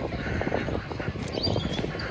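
Low rumble of a golf buggy rolling slowly over a gravel lot, with a brief faint bird call near the end.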